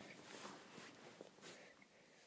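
Near silence, with faint rustling and a few soft ticks of handling.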